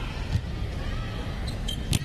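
Arena crowd noise during a volleyball rally, with a soft knock shortly after it starts and a sharp smack of the ball being hit near the end.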